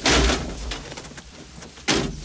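An old Land Rover crashing into a parked car, a sudden loud crunch of metal at the start that dies away over about half a second. A second loud bang comes just before the end.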